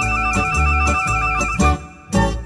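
Instrumental interlude music: a quick high trill held over low accompaniment notes struck about twice a second. It dies away near the end.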